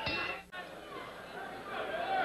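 Indistinct arena crowd chatter and murmuring voices, with a brief drop-out about half a second in.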